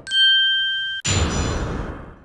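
Editing sound effects on a chapter title card: a bell-like ding holds for about a second and is cut off sharply by a noisy swish that fades away over the next second.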